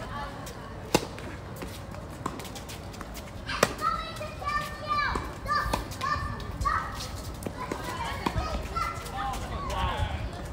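Tennis balls struck by rackets during a doubles rally at the net: sharp pops, the loudest about a second in and another about three and a half seconds in, with a few softer hits later. Voices chatter in the background.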